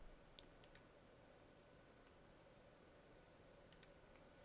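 Near silence: room tone, with a few faint computer mouse clicks, three in the first second and two more near the end.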